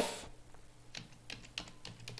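Faint keystrokes on a computer keyboard, a handful of separate clicks as a word is typed.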